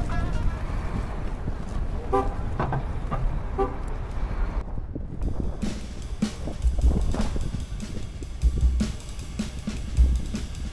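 Two short car-horn honks, about two seconds and three and a half seconds in, over street traffic and background music with drums.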